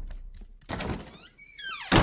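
Horror-film sound design: a dull thud, then several eerie tones sliding downward together and ending in a sharp hit near the end.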